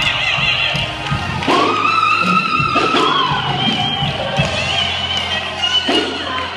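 Live gospel solo singing: a woman's voice holds a long high note from about a second and a half in, then slides down, over keyboard accompaniment and low drum beats.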